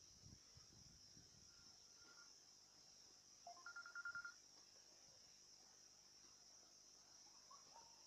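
Faint, steady high-pitched buzz of field insects such as crickets, with a short, rapidly trilled chirp about halfway through and a couple of soft knocks near the start.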